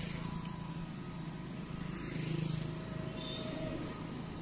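A road vehicle passing close by, its low hum swelling to a peak a little past halfway and then easing off.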